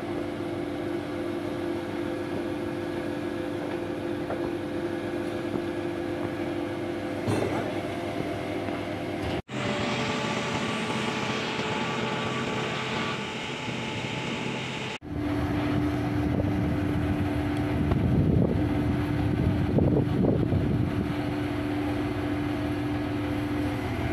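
Truck crane's engine running steadily under a lift, with a steady whine over a low rumble that grows louder in the last third. The sound breaks off abruptly twice where the footage is cut.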